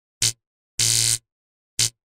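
Electric buzzing sound effects for a flickering neon-style logo reveal: a short buzzing zap, a longer buzz of about half a second in the middle, and another short zap near the end.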